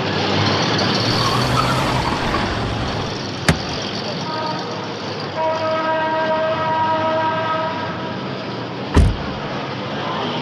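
Car door opening with a sharp click and, near the end, shutting with a heavy thump, over steady outdoor street noise; a steady multi-pitch tone comes in about halfway.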